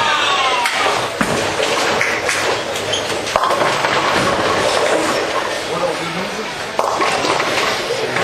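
Bowling ball rolling down a lane, then hitting the pins with a sharp crash about three and a half seconds in. Around it is the constant din of a busy bowling alley: balls and pins on other lanes, with voices chattering.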